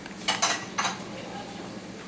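Crockery clinking: two short clinks of a plate or dish in the first second.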